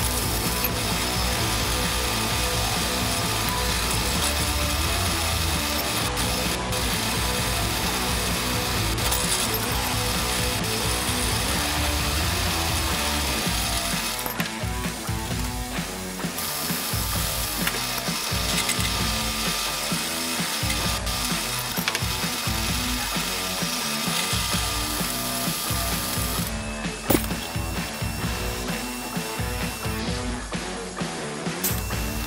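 Floor drill press running, its twist bit cutting into a small metal part with a continuous mechanical clatter; the sound changes partway through as a new hole is started.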